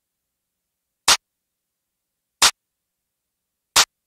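A sampled drum-machine clap hit four times at an even pace, about every second and a third, each hit short and sharp with dead silence between.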